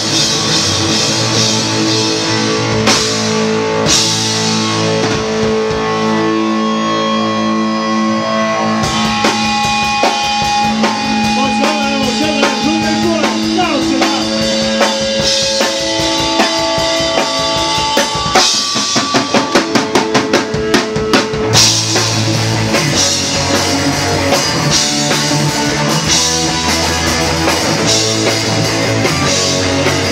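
A live punk rock band plays an instrumental passage: two electric guitars holding sustained notes over a drum kit. About eighteen seconds in comes a run of sharp drum hits, and the full band comes back in about three seconds later.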